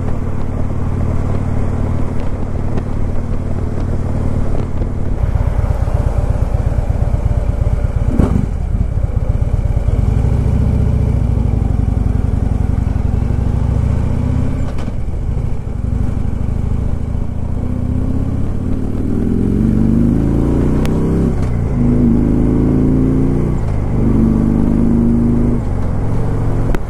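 Harley-Davidson Freewheeler trike's Twin Cam 103 V-twin on its factory exhaust, heard from the rider's seat. It runs steadily, drops to a lower, pulsing beat about five seconds in, and in the last third pulls away with the pitch rising and stepping back down several times as it shifts up through the gears.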